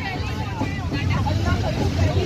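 Passenger train carriage running with a steady low rumble, heard from inside at an open window, with faint voices in the background.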